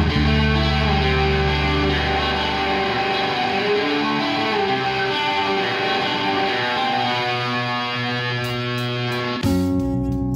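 Progressive black metal instrumental passage: sustained, effects-laden electric guitar notes, with the low bass dropping away about three seconds in. Near the end a louder new section starts with sharp, repeated attacks.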